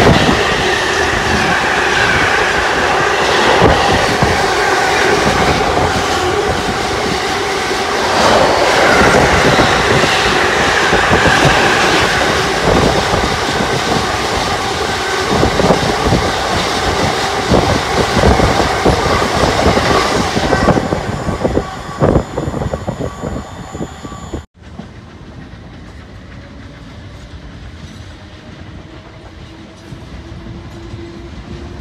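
Trains passing through a station at speed: first a diesel locomotive, then an electric multiple unit, with wheels clicking rapidly over rail joints. The noise fades, then drops off abruptly to much quieter station background.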